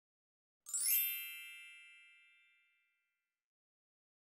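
A single bright chime, a title-card sound effect, struck about two-thirds of a second in and ringing out, fading away over about two seconds.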